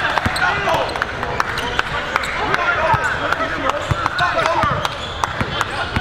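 Basketball game sound on a hardwood gym floor: a ball being dribbled in sharp repeated thuds, with short sneaker squeaks and the crowd's chatter in a large hall.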